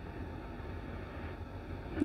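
A pause with only a faint, steady low rumble of room noise.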